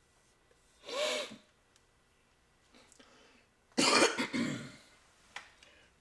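A man clearing his throat briefly about a second in, then coughing louder near four seconds.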